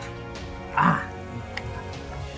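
A man's short grief-stricken cry about a second in, over steady background music.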